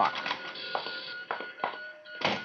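Radio-drama sound effect of rocket control-room equipment: a steady high electronic tone, with a few sharp mechanical clicks coming about a second and a half apart or less.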